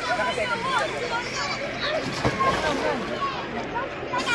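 Several children's voices talking and calling over one another in a babble, with no clear words.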